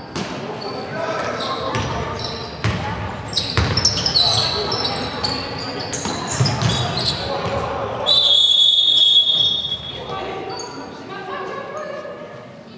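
Basketball game in a reverberant sports hall: the ball bouncing on the wooden floor, sneakers squeaking and players calling out. About eight seconds in comes a long, shrill referee's whistle blast, the loudest sound, stopping play.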